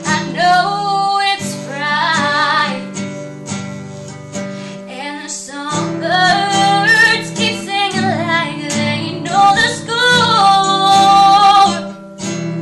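A woman singing solo while strumming chords on a nylon-string classical guitar, holding a long note near the end.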